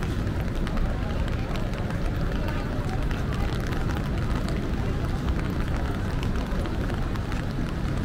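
Rainy city street ambience: a steady low rumble of traffic with indistinct voices and many small ticks, like raindrops.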